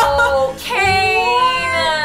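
Women's voices holding long, high, almost sung 'ooh' exclamations of delight: a brief one, then after a short break a longer one that rises and falls.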